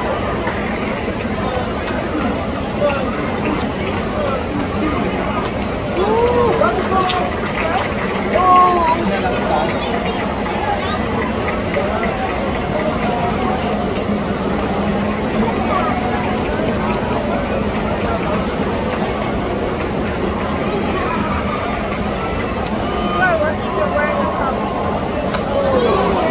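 Baseball stadium crowd: a steady murmur of many spectators talking, with a few nearer voices calling out more loudly about six to nine seconds in.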